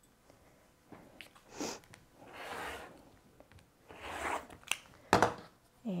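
Rotary cutter drawn along a quilting ruler, slicing through layers of cotton fabric on a cutting mat: three cutting strokes, the middle one the longest, followed by a couple of sharp knocks near the end.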